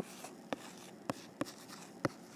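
Faint taps and light scratching of handwriting on a tablet touchscreen, with a sharp tap every half second or so as the letters are drawn.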